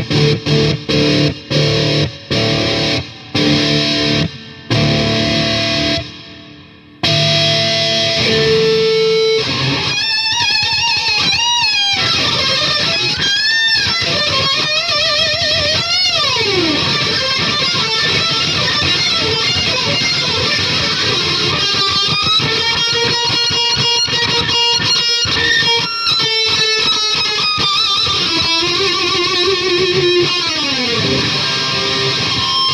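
Electric guitar played through a distorted amp. It opens with short chords broken by gaps, then runs into a lead line full of string bends, vibrato on held notes and a long downward slide about halfway through.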